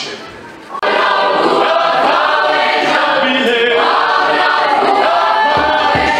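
A South African youth choir comes in suddenly and loudly, singing in full chorus, a little under a second in. It holds a sustained, full sound from then on.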